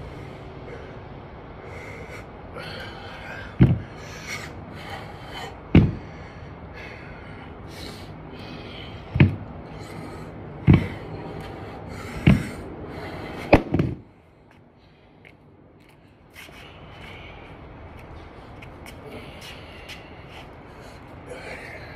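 A man breathing hard while working out with dumbbells, with about six sharp thumps one to three seconds apart. The sound drops away for a couple of seconds about two-thirds of the way in, then the breathing and movement noise return.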